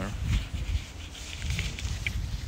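Wind buffeting a phone microphone, an uneven low rumble, with faint footsteps and handling ticks as the phone is carried along the paved platform.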